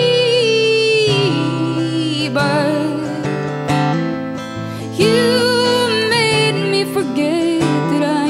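Solo female singer holding long notes with vibrato over a strummed acoustic guitar. The voice drops away in the middle, leaving mostly guitar, then comes back strongly about five seconds in.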